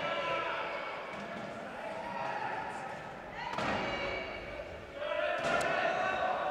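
Rugby wheelchairs clashing and rolling on a sports-hall court, with sharp knocks of chair hitting chair about three and a half seconds in and again near the end, under players' voices echoing in the hall.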